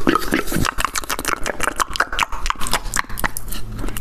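Rapid, wet mouth sounds made close to a handheld recorder's microphone: tongue clicks and lip smacks, many a second.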